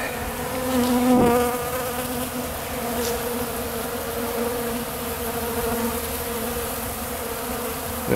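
A crowd of honeybees buzzing in flight, a steady hum, swelling briefly about a second in.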